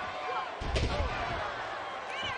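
One heavy thud of a body hitting the wrestling ring's canvas, with a deep boom from the ring, about three quarters of a second in, over steady arena crowd noise.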